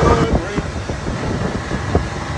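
Motorboat running underway: wind rushing over the microphone with the engine's drone and repeated low thumps.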